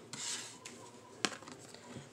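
A tarot card sliding and rubbing across a tabletop with a brief soft rustle, then a single light tap about a second later.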